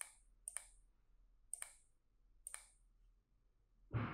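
Faint computer mouse clicks: four clicks, each a quick press-and-release double tick, spaced irregularly over about two and a half seconds. A soft rush of noise comes in right at the end.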